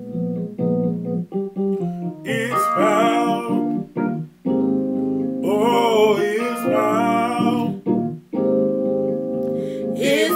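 Gospel singing over sustained organ-like keyboard chords, the voices coming in with two held, wavering phrases, one a couple of seconds in and one around the middle, between stretches of the keyboard alone.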